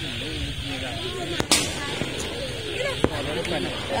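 A single sharp bang from a traditional Malay cannon (meriam) firing about a second and a half in, with a fainter crack near the end, over a murmur of voices.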